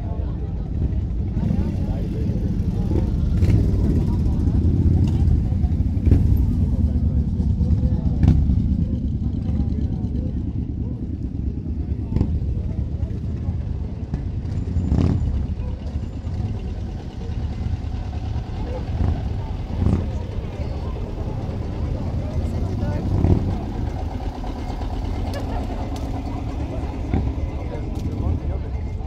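Engines of slow-moving parade vehicles, a pickup truck and an old tractor towing a wagon, running close by with a steady low rumble, over crowd voices.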